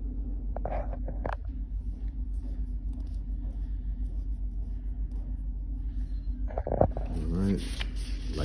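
Steady low background hum, with a few brief noises about a second in and a man's voice starting near the end.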